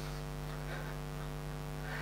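Steady electrical mains hum with a stack of even overtones.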